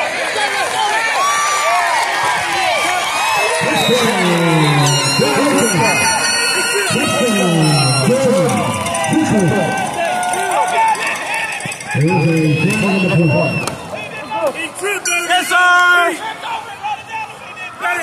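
Crowd and players at a high school football game shouting and cheering, many voices overlapping, with several long falling yells.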